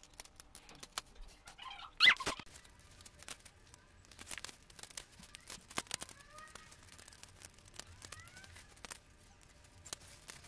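Plastic LEGO bricks clicking and rattling as parts of a brick-built model engine are handled and pressed together, in fast-forwarded footage. A louder short squeaky burst comes about two seconds in.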